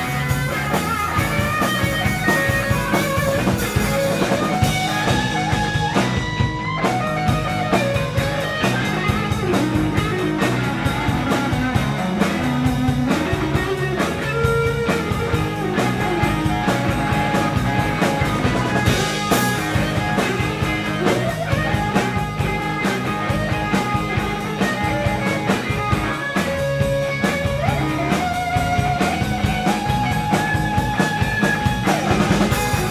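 Live rock band playing an instrumental passage with no singing: electric guitars over a steady drum-kit beat, with a guitar line moving from note to note.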